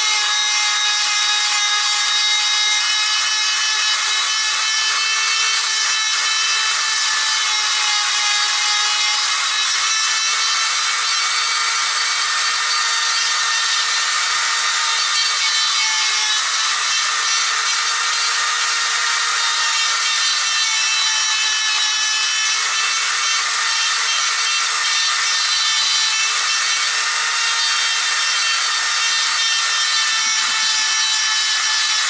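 Handheld corded electric grinder running steadily, its bit grinding into the wood of a ficus trunk chop to hollow it into a round, smooth cavity. A constant motor whine over the rasp of the bit on wood, the pitch dipping slightly now and then as the bit bears on the wood.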